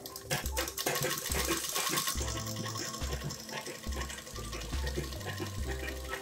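Background music with a steady bass line, with a domestic sewing machine running as it stitches the fabric.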